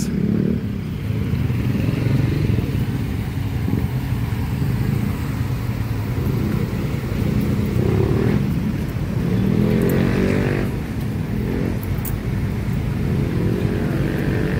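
Close road traffic: motorcycle and car engines running steadily, with one engine passing by about nine to ten seconds in, its pitch rising and then falling.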